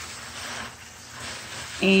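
Steady hiss of water spraying from a pistol-grip garden hose nozzle.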